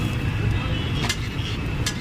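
Street food stall ambience: a steady low rumble of traffic or the griddle's burner, with background voices and two sharp clicks, about a second in and near the end, from a knife or utensil on the steel griddle.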